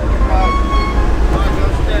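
Passenger ferry's engines running with a steady low rumble as it sits at the pier, with faint passenger chatter behind it.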